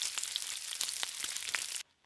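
Small plastic pellets inside a fabric beanbag rustling and clicking as fingers rummage through them, a dense crackling patter that stops abruptly near the end.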